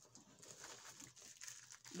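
Faint crinkling of a clear plastic bag being handled, with small rustles and ticks throughout.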